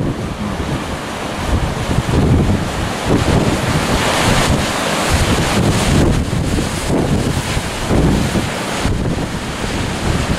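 Wind buffeting the microphone over the wash of waves breaking on a rocky shore, with a louder rush of surf about four seconds in.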